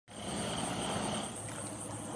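Road noise from passing highway traffic: a steady rush that eases off a little over a second in, with a thin high whine running under it.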